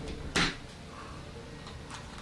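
A single short scrape about half a second in, as a foam suction-cup piece is picked from a metal baking tray, followed by quiet room tone with a faint steady hum.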